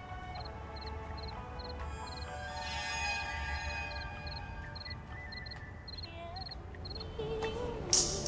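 Slow, sustained music tones with crickets chirping steadily about twice a second, each chirp a quick run of high pulses, as a night ambience. The chirping stops near the end.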